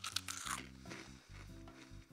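A crunch in the first half second as a single dry piece of cereal is bitten and chewed, over steady background music.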